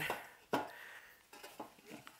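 A single sharp metallic knock about half a second in, followed by a few faint light clicks: a metal chassis box being handled and lifted off a wooden workbench.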